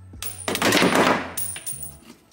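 A quarter dropped onto a magnetic LED work light knocks it off a steel toolbox side; the coin and light clatter down in a rapid rattle of hits lasting about a second. Background music runs underneath.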